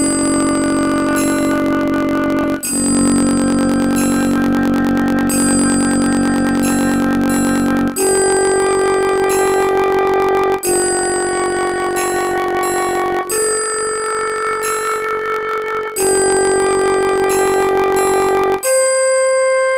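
Synthesized flute voice of a music-notation app playing a raag Yaman melody: one long held note at a time, each sounding about two and a half seconds, with one note sustained about five seconds, in a steady stepwise line.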